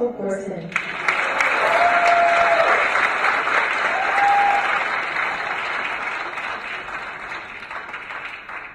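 An auditorium audience breaks into loud applause about a second in, with a couple of held cheering shouts over it. The applause then slowly dies away.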